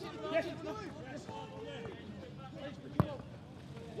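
Footballers' voices calling on the pitch, faint and with no crowd behind them in an empty stadium, and one sharp thud of a football being kicked about three seconds in.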